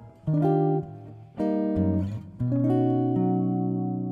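Guitar playing a short chord sequence: a new chord struck about every second, the last one held and ringing out.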